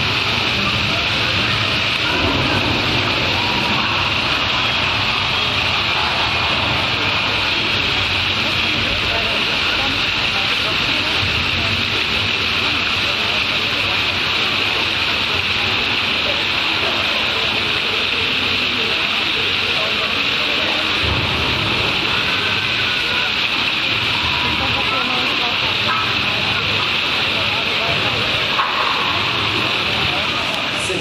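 Steady, unbroken hissing rush from the ride's large flame effect and water jets, with a low rumble of ride machinery underneath.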